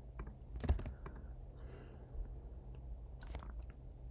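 A few sharp clicks from computer input on a desk, two of them standing out, with a soft breathy hiss between them over a steady low hum.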